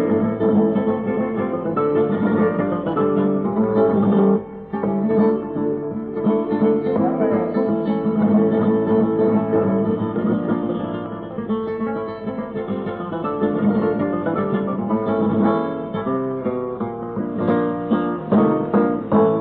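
Flamenco acoustic guitar playing, with a brief drop in level about four and a half seconds in.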